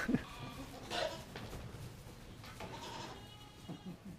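Goats bleating faintly, two short calls, about a second in and again around three seconds.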